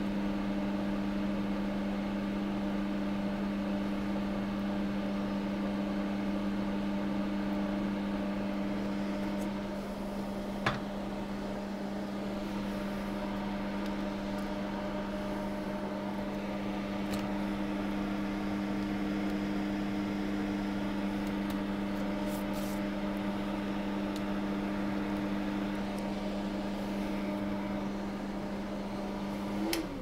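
Steady electric motor hum from bench equipment, one low pitch with fainter overtones, and a single sharp click about ten seconds in. At the end the hum slides down in pitch and fades as the motor is switched off and spins down.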